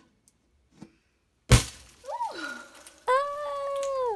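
A 24-inch latex balloon inside a paper-mâché shell, pricked with a pin through tape, bursts with one sharp bang about a second and a half in instead of leaking slowly. A startled cry that rises and falls follows, then a held vocal cry near the end.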